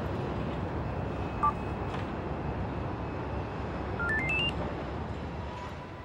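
Steady background noise, with a short two-note electronic beep about one and a half seconds in and a quick rising run of six electronic beeps about four seconds in.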